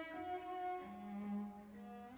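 Orchestral music with a slow bowed-string melody of long held notes, the low line dropping to a sustained note about halfway through.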